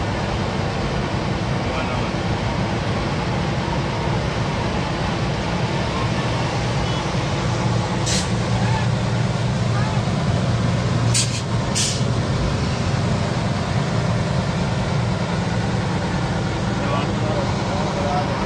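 Steady drone of a vehicle's engine and road noise heard from inside the cab while it drives through floodwater. Three short sharp sounds cut through, one about eight seconds in and two close together a few seconds later.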